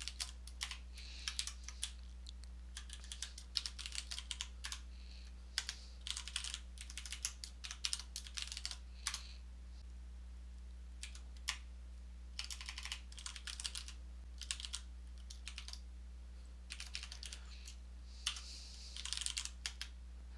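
Typing on a computer keyboard: quick runs of key clicks in bursts, broken by a couple of short pauses of a second or two, over a steady low hum.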